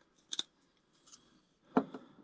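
A few short, sharp clicks from small fly-tying tools being handled at the vise: a quick pair about a third of a second in, and a louder single click near the end.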